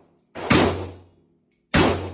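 Micro Draco 7.62x39mm AK pistol fired twice, slow single shots about 1.2 seconds apart, each sharp report dying away in the echo of an indoor shooting range.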